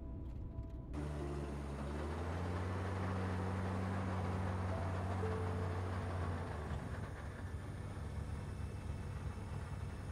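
Car engine running with a steady low rumble that starts about a second in as the car pulls away.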